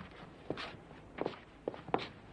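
Footsteps of people walking on a hard surface: a handful of separate, uneven steps over a quiet background.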